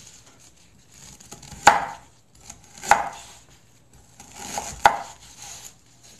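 Kitchen knife slicing through peeled ginger on a wooden cutting board: three sharp knocks of the blade hitting the board, the first the loudest, with softer slicing and scraping sounds between them.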